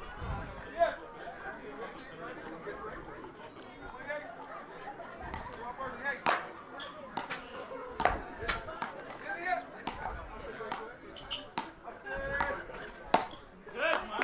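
Road tennis rally: a tennis ball being hit by wooden paddles and bouncing on the road court, heard as sharp, irregular knocks that come mostly in the second half. Crowd chatter runs underneath.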